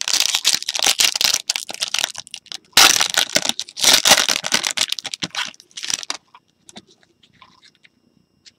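Plastic wrapper on a trading-card pack being crinkled and torn open by hand, a busy run of crackling that stops about six seconds in, leaving only a few faint ticks.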